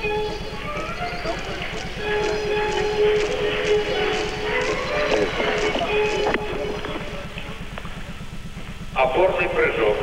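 Gymnastics arena ambience on an old TV broadcast recording: crowd murmur with faint music playing in the hall, over a steady low electrical buzz.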